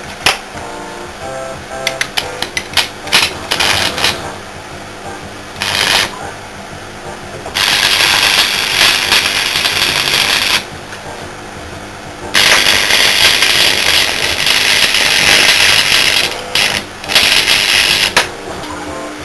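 Stick (arc) welding a steel bushing onto a steel flange plate: a few short arc strikes and tacks, then two long runs of loud, steady crackling and spitting as the bead is laid around the joint. The rods are old damp electrodes, a likely cause of the heavy spatter in the stills.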